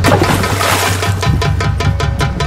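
A loud splash of water as a person jumps in, lasting about a second from the start, over background music with a steady drum beat.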